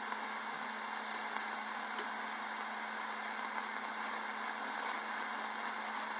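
Radio receiver hiss: steady open-squelch static between transmissions, with a low steady hum under it and a few faint clicks about one to two seconds in.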